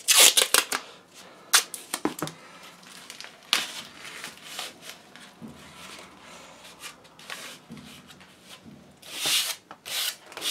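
Masking tape being pulled off the roll and torn into strips, then pressed and rubbed down over crumpled card: sharp rasping rips at the start and again near the end, with taps and rustling between.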